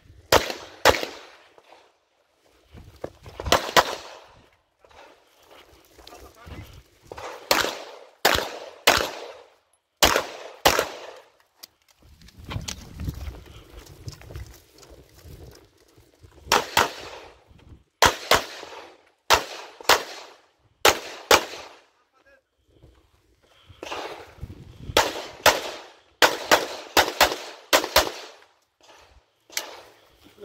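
Pistol shots fired mostly in quick pairs, in bursts of several shots with pauses of a few seconds between them, each shot sharp and followed by a short echo.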